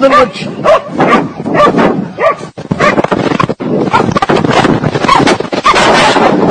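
A dog barking and yelping over and over in quick succession, loud, over a rushing noise that grows through the second half.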